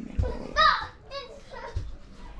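A child's high-pitched voice calling out twice in the background, one short bending call about half a second in and a shorter one just after. There are soft low thumps near the start and near the end.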